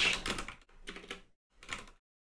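Typing on a computer keyboard: a few short bursts of keystrokes.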